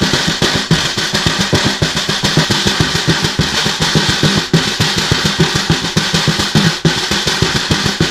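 Snare drum played with bare hands: a fast, continuous stream of finger and palm strokes on the head, many strokes a second.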